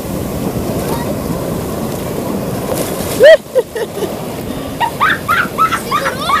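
Sea water washing and sloshing close around the camera in shallow breaking surf. A short, loud shout breaks in a little past three seconds, and more shouting voices come in near the end.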